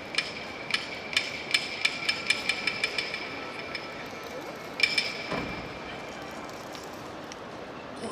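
Bright ringing percussion strikes, slow at first, then quickening into a fast roll that dies away about four seconds in, with one last strike near the five-second mark.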